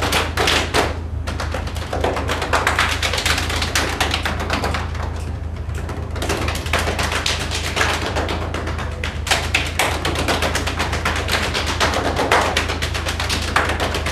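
Ensemble body percussion: many players' hand claps and slaps on their legs and bodies in a fast, dense, interlocking rhythm.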